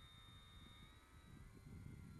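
Near silence: a faint low rumble with a faint, thin, steady high whine.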